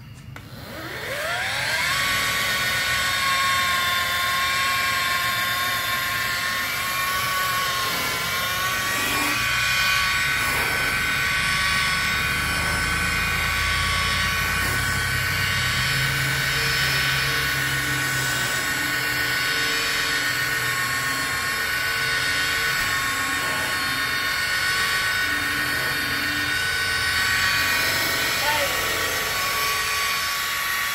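DeWalt cordless rotary polisher with a wool cutting pad spinning up to speed, its whine rising in pitch over the first two seconds, then running steadily as it cuts polish into sanded paint. Its pitch dips briefly once.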